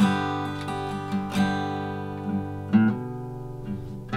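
Steel-string acoustic guitar strummed, with a hard chord stroke about every second and a half, lighter strokes in between, and the chords left ringing out.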